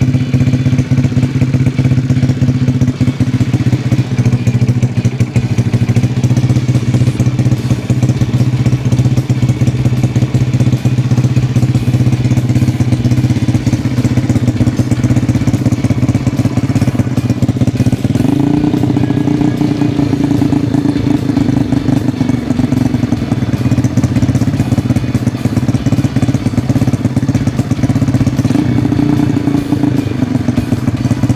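Freshly rebuilt Honda Astrea single-cylinder four-stroke engine, with a 67.9 mm stroke and 52.4 mm piston, running steadily on its first run-in. Its pitch rises slightly about eighteen seconds in and holds there.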